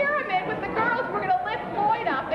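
Speech only: a woman talking, with crowd chatter around her.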